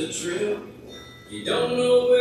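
A recorded song with a man singing: a sung phrase ends about half a second in, then after a short lull a new long note is held near the end.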